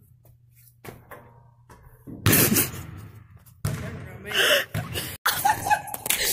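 A boy laughing, with a few faint scattered knocks before it.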